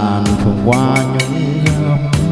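A man singing into a microphone over a karaoke backing track with a steady beat about twice a second.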